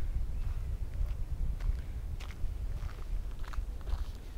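Footsteps on a sandy, stony dirt track, a short step sound about every half second, over a steady low rumble on the microphone.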